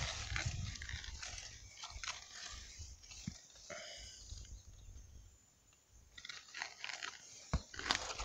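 A knife blade cutting and crunching into the tough husk of a ripe cacao pod: irregular scraping crunches with a few sharp knocks, and a short pause about five seconds in.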